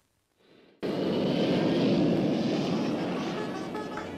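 After a brief silence, jet airliner engine noise comes in suddenly about a second in, a loud even roar that slowly fades.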